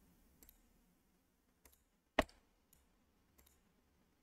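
Computer mouse button clicks: a few faint ones and one sharper click about two seconds in.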